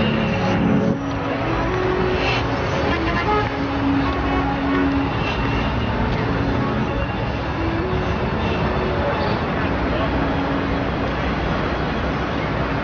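Music breaks off about a second in, giving way to steady city street ambience: traffic noise with indistinct voices.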